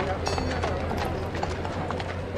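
Horse hooves clip-clopping on paving amid the chatter of a street crowd, over a steady low hum.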